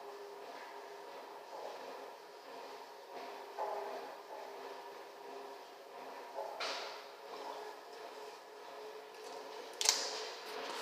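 Quiet small room with a faint steady hum and a few soft knocks, then a sharper, louder knock near the end as the man comes up to the propped phone.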